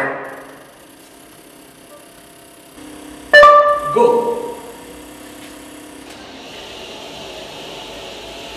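A brief, loud two-note electronic chime from a smartphone app about three seconds in, fading out over a second or two; a faint steady hum lies under the rest.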